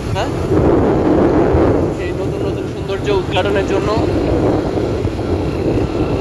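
Wind buffeting the microphone of a moving motorcycle, over the bike's engine running, loudest in the first couple of seconds.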